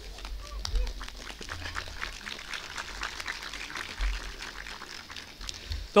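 Audience applauding and cheering, a dense patter of clapping with a few voices calling out.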